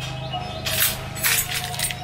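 A bunch of car keys jangling and clinking in a hand as they are picked up, in several short metallic rattles, over faint background music.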